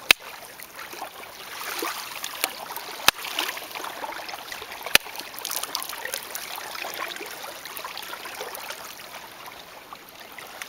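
Gentle lapping and trickling of shallow water, broken by three sharp knocks: one right at the start, one about three seconds in and one about five seconds in.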